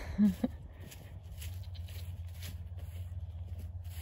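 A short voice sound in the first half-second, then a steady low rumble with faint soft steps on grass.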